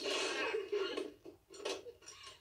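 Movie soundtrack playing at low level: a brief rush of hiss, then a couple of light clicks in the second half.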